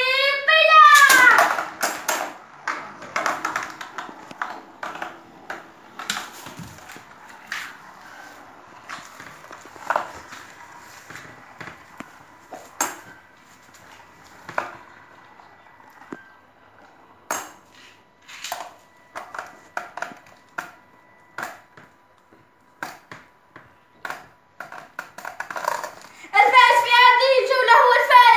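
Two Beyblade spinning tops spinning in a plastic basin: a low steady whirr broken by many scattered sharp clacks as they strike each other and the basin wall. Children's voices shout at the launch and again near the end.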